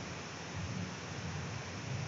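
Steady background hiss of the recording's noise floor, with no distinct sound in it.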